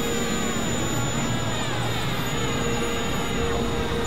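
Dense layered experimental noise-drone music: a steady noisy wash like a jet engine, with held tones and pitch glides sweeping through it.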